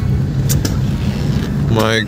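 Steady low rumble of a car's engine and road noise, heard from inside the cabin, with a couple of brief clicks about half a second in.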